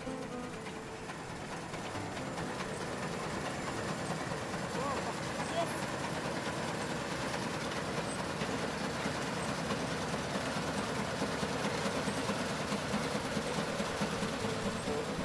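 Combine harvester running through standing grain, a steady mechanical clatter that grows gradually louder.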